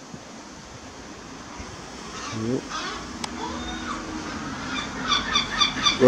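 Birds calling, with a fast repeated chattering call that grows louder over the last second or so.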